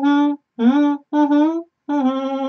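A woman humming an a cappella melody with closed lips, in short held notes split by brief gaps. One note slides up into its pitch, and a new note begins near the end.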